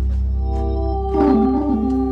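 Hammond A-100 tonewheel organ played in a traditional blues style: a held chord over a deep bass note, with a short stepping melody line on top from about a second in.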